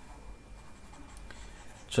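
Faint stylus scratching and tapping on a tablet screen while handwriting is erased, over a low steady room hum; a spoken word begins at the very end.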